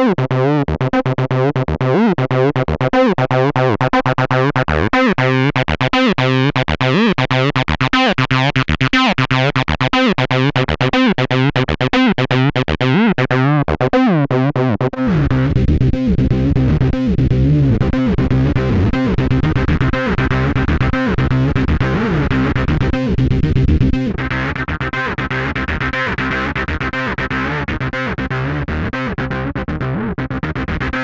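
Troublemaker 303-style acid bass synth playing a repeating sequenced bassline through Eventide CrushStation overdrive/distortion, heavily distorted. About halfway in the tone changes abruptly to a thicker, heavier low end as the distortion setting is switched, while the filter cutoff is being turned up.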